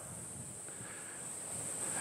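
Quiet outdoor garden ambience: a steady high-pitched insect drone, with faint rustling and wind noise underneath.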